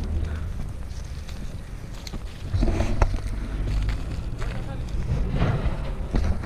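Wind buffeting the microphone as a steady low rumble, with a few short bursts of talking about two and a half seconds in and again near the end.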